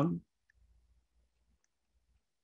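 The end of a man's spoken word, then near silence broken by two faint, short clicks.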